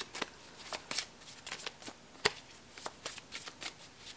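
Tarot cards being shuffled by hand: soft, irregular flicks and slides of the cards, with one sharper snap a little past halfway.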